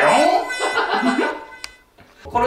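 A man's wordless vocal reaction while tasting: a loud, drawn-out sound whose pitch slides up and down, trailing off near the end, with a single click just before it fades.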